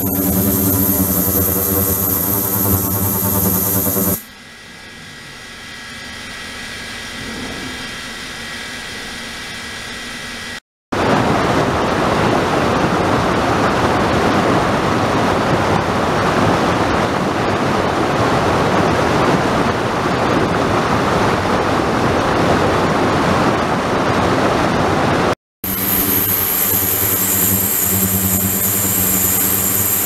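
An ultrasonic cleaning tank's electric circulation pump runs with a steady motor hum and a high whine, and water churns in the tank. A few seconds in, this gives way to a quieter stretch. After a brief cut, river rapids rush loudly and evenly for about fifteen seconds. After another cut, the pump hum and high whine return near the end.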